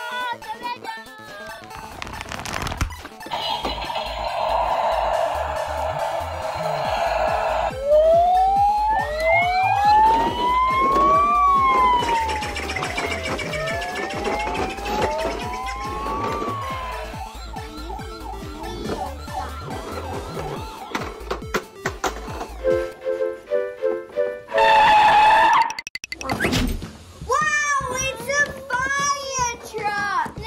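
Toy police car's electronic siren wailing, its pitch rising and falling several times in the middle, over background music with a steady beat.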